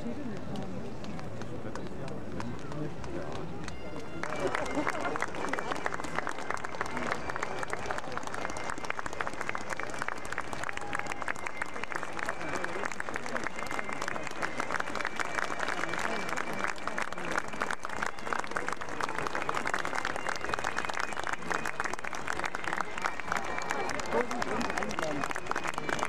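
Crowd of spectators applauding, the clapping starting suddenly about four seconds in and going on steadily over a murmur of voices.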